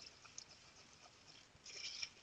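Faint sounds of a metal spoon stirring wet filling plaster in a bowl: small scattered ticks, then a short scrape near the end.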